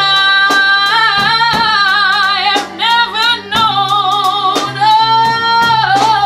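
A woman singing long, wavering held notes over instrumental backing with a bass line and a steady beat.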